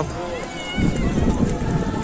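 Wind buffeting the microphone in irregular low rumbles, growing stronger under a second in, over the general murmur of a crowd outdoors with faint distant voices.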